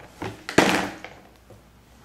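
A sippy cup knocking against a plastic high-chair tray as a baby fumbles with it: a light tap, then a sharp, louder knock about half a second in with a short rustle after it, and a faint tap later.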